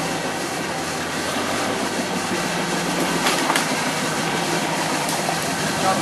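V8 engine of a Jeep CJ5 running steadily as the jeep crawls over slippery rocks.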